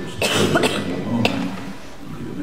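A person coughing, loud and close, starting about a quarter second in, with a short sharp click about a second later.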